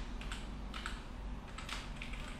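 Typing on a computer keyboard: a quick, uneven run of keystrokes, about a dozen in two seconds, over a steady low hum.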